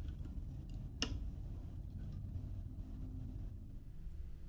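Faint handling of PC parts: a single light click about a second in, over a low steady room hum.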